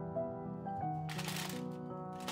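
Aluminium foil crinkling and rustling under the hands from about a second in, as garlic and shallot pieces are set into a foil tray, over soft background music with sustained tones.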